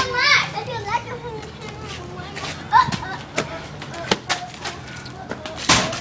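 Children playing outdoors: brief voices and shouts, with a few sharp, irregularly spaced knocks in between.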